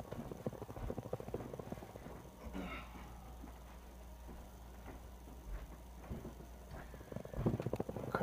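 Faint knocks and taps of a person moving about the room off-camera, over a steady low hum. The taps come thicker near the end.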